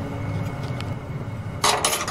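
A brief metallic clatter near the end, two sharp clinks in quick succession, of kitchen metalware around a stainless steel mesh strainer and a knife, over a steady low hum.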